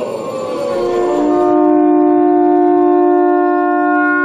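A conch shell (shankha) blown in one long, steady note that starts about a second in, sounded as the traditional close after the "ki jaya" call.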